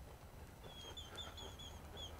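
A small bird chirping faintly in a quick, even series of short, slightly down-curving notes, about five a second, starting about half a second in.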